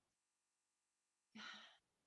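Near silence over a video call, broken about one and a half seconds in by a brief, faint intake of breath just before a reply.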